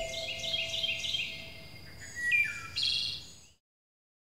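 Songbirds chirping in quick series of short, high notes, with a held musical tone dying away under them in the first second and a half; the birdsong fades out about three and a half seconds in.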